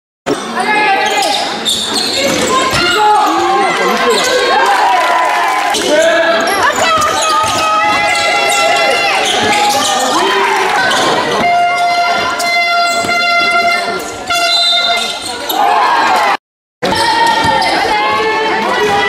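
Basketball game sound in a large sports hall: players and spectators calling out over the bouncing ball. A horn-like tone is held for about three seconds past the middle. The sound cuts out twice for a moment, near the start and near the end.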